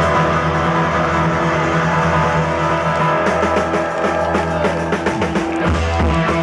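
Live rock band playing, with guitars over sustained bass notes and no singing.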